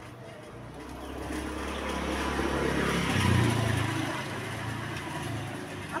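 A motor vehicle's engine passing by, growing louder to a peak about three seconds in and then fading.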